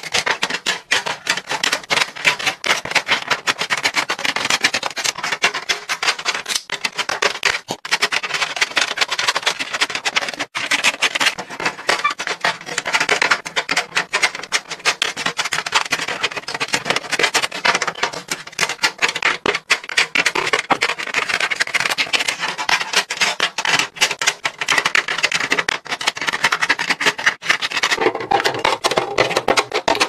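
Cosmetic palettes, compacts and bottles being set down and slid into clear acrylic organizers, making a rapid, continuous run of plastic-on-acrylic taps, clacks and rubbing.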